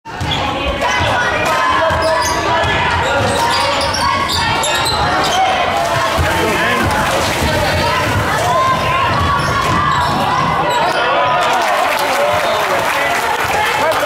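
Basketball dribbled and bouncing on a hardwood gym floor during live play, with voices of players and spectators echoing in the hall.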